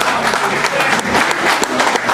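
Audience applauding at the end of a live band's song, with voices heard among the clapping.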